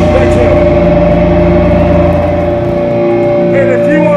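Electric guitars left ringing on steady sustained tones through the amplifiers, with no drums, as a song ends. The low bass falls away about three seconds in. Shouting voices come in near the end.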